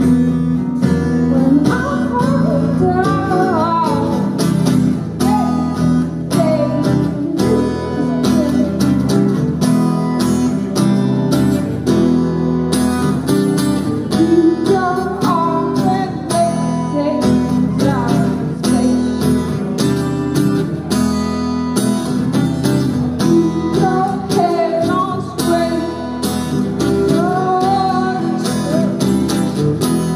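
Acoustic guitar strummed steadily, with a woman singing a melody over it in phrases that come and go.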